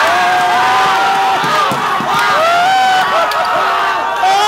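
A small crowd screaming and cheering in excitement, several voices holding long high shouts at once.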